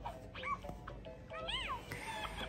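Faint background music, with two short high calls that rise and fall in pitch, about half a second in and about a second and a half in.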